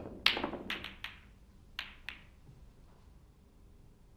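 Snooker balls colliding as the cue ball smashes into the pack of reds: a loud cluster of clacks as the pack breaks open, then several separate sharp clacks as the balls strike each other and the cushions, dying away about two seconds in.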